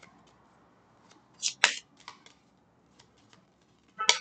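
Tarot cards being shuffled by hand: faint soft clicks of cards against each other, with one brief louder slide of cards about a second and a half in.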